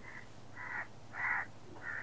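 A bird's harsh call, repeated four times at about 0.6-second intervals; the third call is the loudest.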